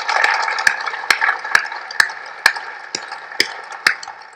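Audience applause fading away, with a few loud claps standing out at an even pace, about two a second.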